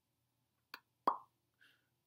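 A man's mouth sounds during a pause for thought: a faint click, then a louder wet lip pop about a second in, followed by a short soft breath.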